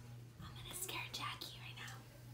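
Faint whispering, over a low steady hum.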